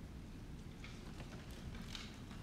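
Quiet room tone with a low steady hum and a few faint scattered clicks or taps, the strongest near the end.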